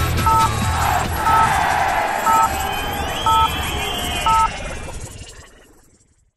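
Electronic theme music with a two-tone beep once a second, in step with an on-screen countdown clock. Gliding synth sweeps run under it, and the music fades out over the last second or so.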